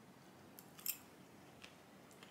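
Metal knife and fork clicking against a ceramic bowl while cutting food. There are a few sharp clicks, the loudest just before the middle and one more later.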